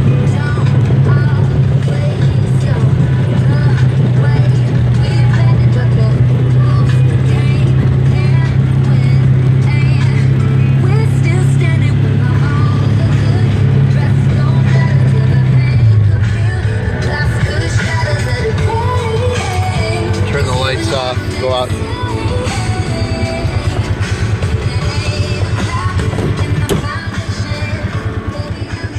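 Polaris side-by-side's engine running with a steady low drone while driving, which drops in pitch and eases off about 16 seconds in, under music with singing from the vehicle's stereo.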